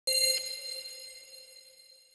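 A single bell-like metallic ding, struck once right at the start and ringing out, fading steadily over the next couple of seconds.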